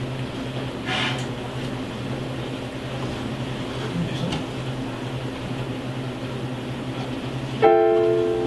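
A steady low hum with faint room noise. Near the end, a Casio digital piano sounds a sustained chord as a piece begins.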